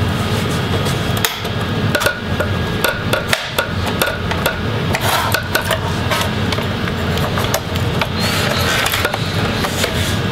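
Irregular sharp clicks and snaps as the laptop display's front bezel is pried loose from its back cover, over a steady low hum.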